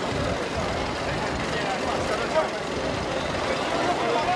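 Outboard motors of small open fishing boats running at idle, under a steady murmur of crowd voices.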